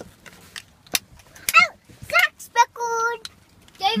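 Young children's voices: short high-pitched calls and one drawn-out, steady call about three seconds in, with a few sharp clicks between them.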